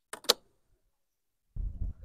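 Two quick clicks from beehive equipment being handled, then a low rumble of handling noise in the last half second as a hive part is lifted.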